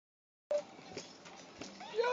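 Baby bouncing in a Graco jumper: faint creaks and clicks from the jumper, with a short high vocal squeal about half a second in and a laugh starting near the end.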